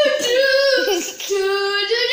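A child's voice singing long held notes: a higher note, a brief break with sliding pitch about a second in, then a lower held note.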